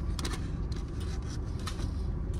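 Steady low hum inside a parked car's cabin, with a few faint clicks and mouth sounds from someone chewing food.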